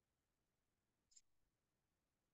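Near silence, with one faint, short click about a second in.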